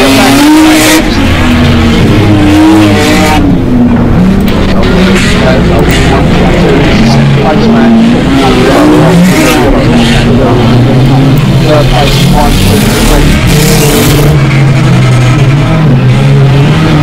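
Engines of several rear-wheel-drive dirt rod race cars revving up and down as they pass close by, loud throughout, with several engine notes rising and falling over one another.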